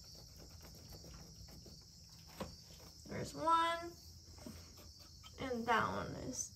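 Quiet stretch with a steady high hiss and a few faint clicks as a loosened rubber coolant hose and its clamp are worked off a metal pipe. A brief voice sound comes about three and a half seconds in, and another just before the end.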